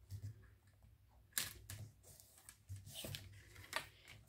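Faint paper-handling sounds from hands pressing and smoothing glued patterned paper onto a kraft cardstock card: scattered short rustles and taps, the first and sharpest about a second and a half in.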